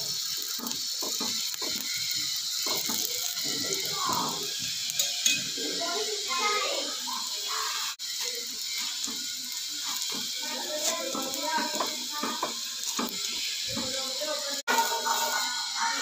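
Paratha frying in oil on a hot flat tawa, the oil sizzling steadily, with scraping and knocking as a spoon spreads oil and a wooden press pushes the paratha against the pan.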